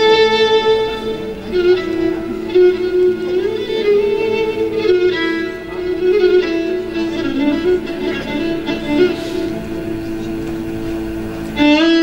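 Violin playing a slow melody in long held notes that step from pitch to pitch, with a Turkish classical music ensemble accompanying.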